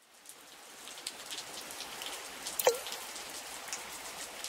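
Rain sound effect fading in to a steady patter with scattered small drop ticks, and one drip-like plink whose pitch drops quickly about two-thirds of the way through.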